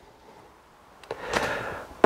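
A pause with faint room tone, then about a second in a man's soft audible intake of breath that runs until he speaks again.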